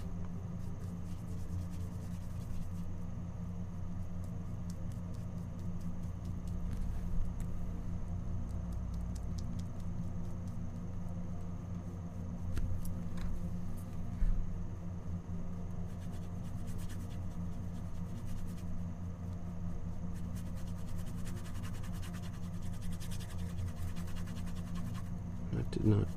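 Quiet room tone with a steady low hum, over which a paintbrush faintly scratches and swishes as it spreads a thin acrylic glaze across canvas.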